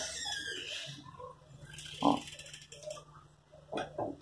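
Soft rustling of grosgrain ribbon being folded and pinched between fingers, fading after about a second, followed by a few faint handling sounds.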